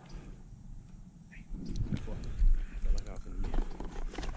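Low rumbling buffets on a body-worn camera's microphone, starting about a second and a half in and loudest around halfway through, with a faint muffled voice under it.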